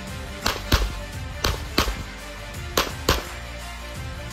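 Six 9mm pistol shots fired in three quick pairs, about a third of a second between the shots of a pair and about a second between pairs: double taps on the practical-shooting stage's targets. Background music plays under the shots.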